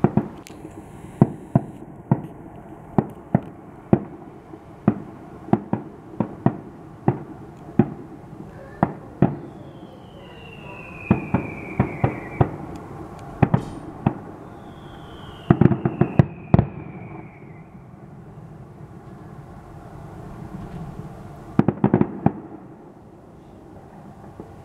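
Aerial firework shells bursting one after another in a rapid string of sharp bangs, about one or two a second, with tighter clusters of several bangs near the middle and near the end. Two long falling whistles sound partway through.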